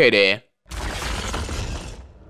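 A voice finishes a phrase, then after a brief silence a dense, noisy rumble starts about three-quarters of a second in and runs on steadily: a dramatic soundtrack effect.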